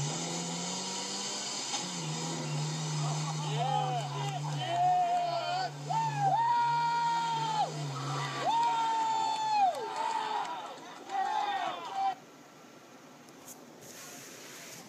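A 1985 Toyota pickup's engine drones steadily under load as the truck climbs, its pitch stepping up and down. Over it, people shout and call out, with a couple of drawn-out yells. The whole is heard as a video played back through a TV's speakers, and it cuts off about two seconds before the end.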